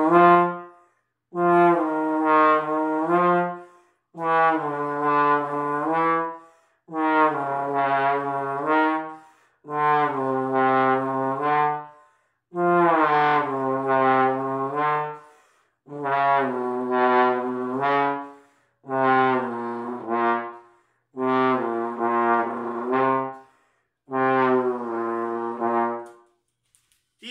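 Trombone playing about ten slurred phrases of about two seconds each, with short breaths between them. In each phrase a held note steps or slides to a nearby pitch as the slide moves: a false-tone exercise that plays a note in its real position and then in a false-tone slide position.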